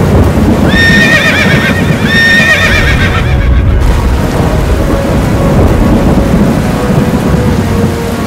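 A horse whinnies twice in quick succession in the first three seconds, each call wavering in pitch, over a dense, steady low rumble of battle noise.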